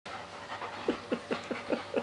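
German Shepherd panting in a quick, even rhythm of about five breaths a second.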